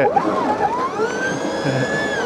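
Ather Rizta electric scooter's motor whining, rising in pitch and then holding steady as the rear wheel spins in mud with skid (traction) control switched off.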